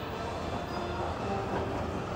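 Mall escalator running while being ridden: a steady low mechanical hum.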